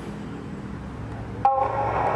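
Audio of a film playing from a laptop: a low steady hum and hiss, then about a second and a half in a sudden, louder pitched sound with several tones starts and carries on.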